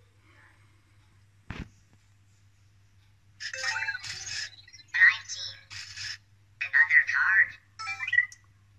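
Anki Vector robot making its electronic chirps and synthetic voice sounds in four short bursts in the second half, as it deals another blackjack card on its face screen. A single click comes about one and a half seconds in.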